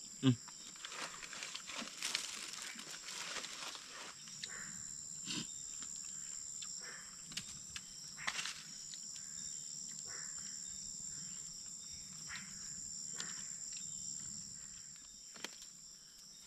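Night insects chirring steadily at a high pitch, with scattered small clicks and rustles. A brief low sound falls in pitch just after the start and is the loudest moment.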